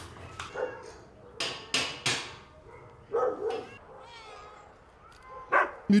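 Cats meowing: a string of short separate cries, the loudest three close together about a second and a half to two seconds in.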